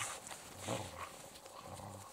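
Elkhound dogs moving about and shuffling in snow, with one short, faint vocal sound about two-thirds of a second in.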